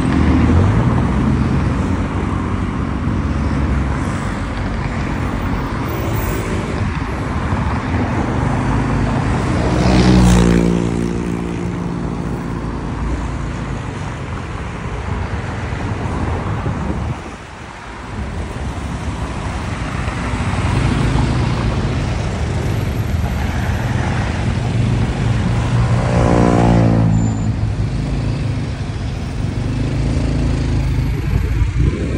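Road traffic heard from a motorcycle moving in the flow: engines running with a steady road noise. An engine revs up loudly about ten seconds in, the noise drops briefly just past halfway, and another engine revs up near the end.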